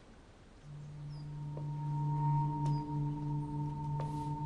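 Sustained droning tones of a dramatic background score, entering about half a second in and swelling. A higher steady ringing tone joins about a second in.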